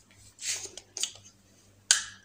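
Handling noise from a stainless-steel battery-operated salt and pepper grinder as its battery cap is unscrewed and taken off. There is a brief scrape about half a second in, a small click at about one second, and a sharp click near the end.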